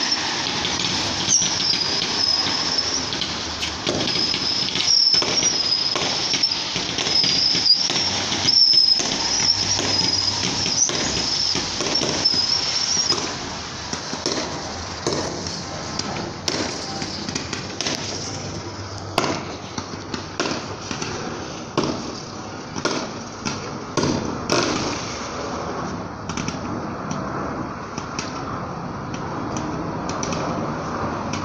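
A fireworks display: a string of aerial shell bangs and crackling bursts, coming thick and fast, with a high wavering whistle over the first half that then fades.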